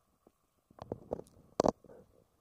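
Handling noise from a handheld camera as it is lowered: a cluster of rubbing and knocking against the microphone starting almost a second in, with the loudest sharp knock about a second and a half in.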